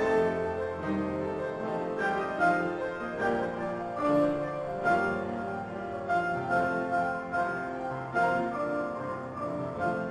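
Four pianos playing together in an arrangement of spirituals, with the melody passing from one piano to another among many overlapping struck notes and chords.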